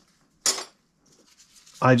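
A single short metallic clink of brass saxophone keywork being handled, about half a second in.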